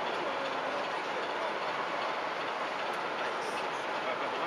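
A model diesel locomotive hauling a coach along a model railway layout, heard against a steady hall-wide background noise.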